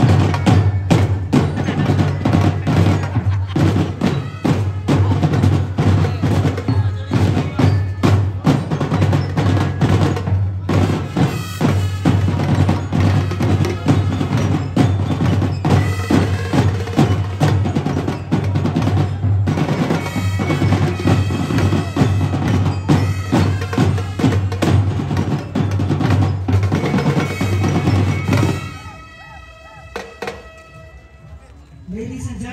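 A marching drumline of snare drums, tenor drums and bass drums playing a fast, busy cadence, cutting off abruptly near the end.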